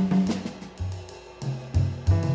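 Jazz drum kit played with sticks, with cymbal and drum strokes, and a grand piano adding a few sparse notes. The piano thins out through the middle and a low note comes in near the end.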